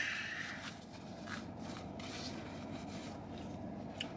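Faint rubbing and rustling of the steering wheel's horn pad being wiped clean of spilled chili, with a few soft scattered ticks and no horn sounding.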